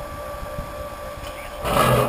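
Small electric wort pump running with a steady whine, pushing the last of the wort through a plate chiller. Near the end a short, louder burst of noise breaks in.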